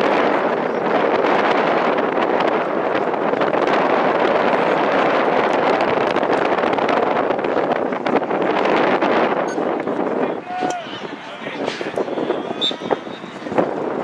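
Crowd noise from spectators at a lacrosse game, a loud, even mass of voices for about ten seconds that then eases off.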